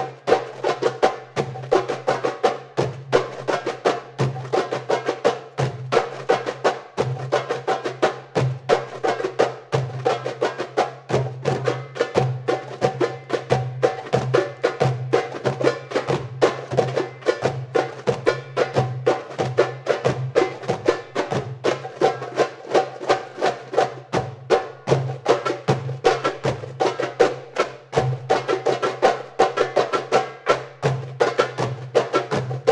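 An ensemble of darbukas (Middle Eastern goblet drums) playing a fast, dense hand-drum rhythm, sharp strokes packed tightly over a deep stroke that recurs every second or so.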